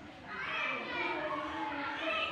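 Faint, higher-pitched voices of children talking in the background while the main speaker is silent.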